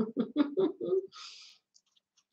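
A woman laughing in quick short bursts for about a second, followed by a brief soft hiss.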